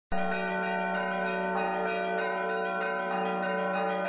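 Bells ringing in an overlapping peal that starts abruptly, a low tone held underneath while higher strikes change every fraction of a second.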